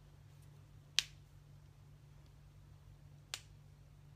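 Two short, sharp clicks a little over two seconds apart, the first the louder, over a faint steady low hum.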